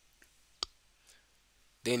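A single sharp click about half a second in, with a fainter tick just before it, over quiet room tone.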